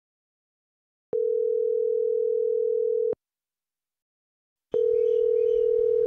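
Telephone ringback tone heard by the caller of an outgoing call: two steady, even rings, each about two seconds long, a second and a half apart, the second starting near the end.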